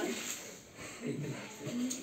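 A brief spoken word at the start, then faint, low voices talking.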